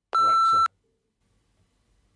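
A single short, steady electronic bleep, about half a second long, laid over a spoken word. It is followed by near silence while the Echo Show 10 swivels its screen with its motor not audible at all.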